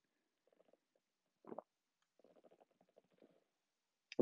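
Near silence, with faint sounds of a man sipping and swallowing a drink from a mug; one slightly louder sound comes about one and a half seconds in.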